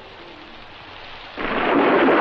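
Film storm sound: a soft hiss of rain, then about one and a half seconds in a sudden loud rush of noise, heard as thunder and heavy rain.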